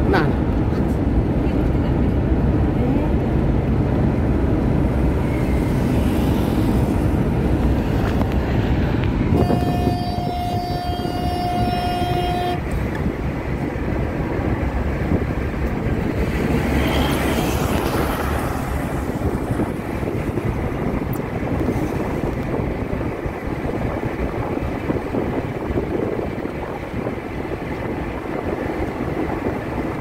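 Steady rumble of road and wind noise from a vehicle driving along a highway. About nine seconds in, a vehicle horn sounds one long, steady note for about three seconds.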